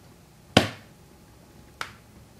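Two sharp clicks about a second and a quarter apart. The first is louder and rings off briefly.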